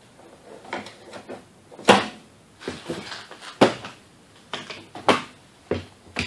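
Sharp clicks and knocks of plastic interior door-panel trim being worked by hand with a screwdriver on a 1990s Honda Civic door. The three loudest come about two, three and a half and five seconds in, with lighter taps between.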